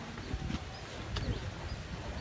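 Faint, indistinct voices of people outdoors over a low rumble, with a few sharp, irregular clicks.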